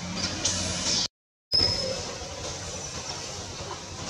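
Steady outdoor background noise with a low hum and a few brief high chirps. The sound cuts out completely for about half a second just after one second in.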